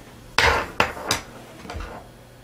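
Four knocks and clatters of hard objects, the first and loudest about half a second in, the others coming within the next second and a half.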